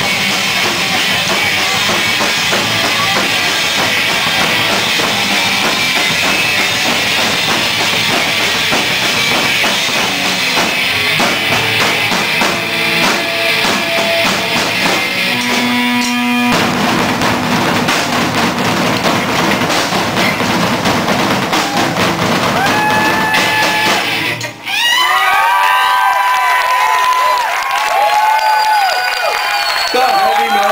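Live heavy metal played on several drum kits with double bass drum pedals and electric guitars, dense and loud. The music cuts off about 24 seconds in and is followed by a crowd cheering and whooping.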